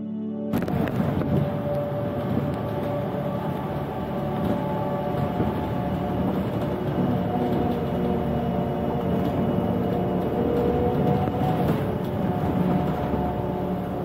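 Steady engine and road noise inside a moving city bus, with ambient music underneath. The bus noise cuts in suddenly just after the start and cuts off at the end.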